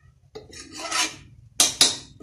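Steel ladle scraping and stirring a thick kurma paste against the bottom and sides of an aluminium pressure cooker. Near the end come two sharp clinks of metal on metal.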